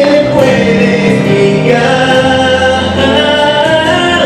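Male vocalist singing long held notes into a handheld microphone over musical accompaniment, amplified through the hall's sound system.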